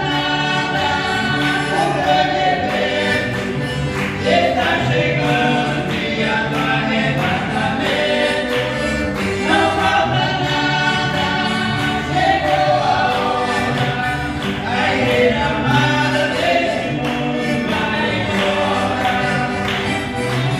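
A woman and a man singing a gospel hymn in Portuguese together, accompanied by a piano accordion playing steady held chords.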